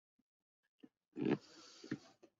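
A person's short grunt-like vocal sound about a second in, then faint breath and a brief second sound near the end. The first second is near silence.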